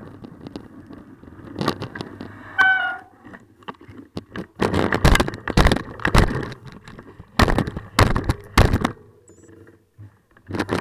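A bicycle's handlebar-mounted camera picks up loud, irregular knocks and rumbles as the bike turns and moves off through snow. There is a short high squeak about two and a half seconds in.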